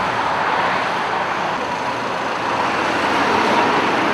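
Steady noise of passing motorway traffic, an even wash of engine and tyre sound with no single vehicle standing out.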